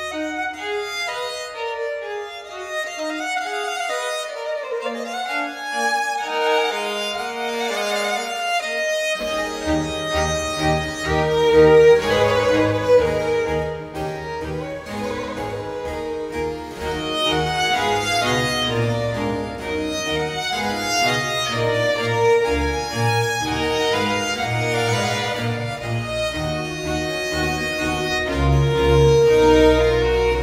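A baroque chamber ensemble of bowed strings playing a lively piece: the upper violin lines play alone for about the first nine seconds, then the bass instruments come in underneath and the full ensemble plays on.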